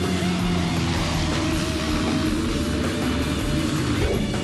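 Rock music with electric guitar, at a steady level.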